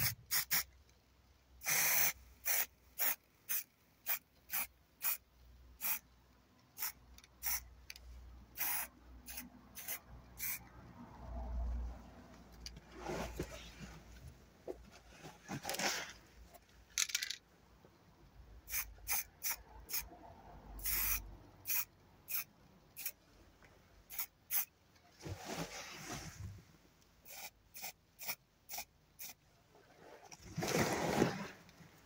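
Aerosol spray-paint can spraying in many short hissing bursts, with a few longer sprays, as camouflage spots are dabbed onto a canteen.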